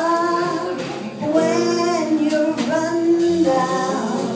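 A woman singing a slow jazz ballad in long held notes, backed by piano, upright bass and drums.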